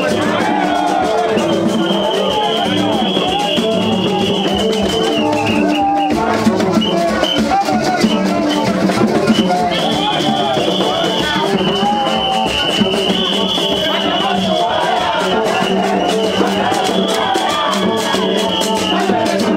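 Gagá street procession music: voices singing over drums and rattles, with a repeating figure of low held horn notes. A high, whistle-like tone is held for a few seconds at a time, over and over.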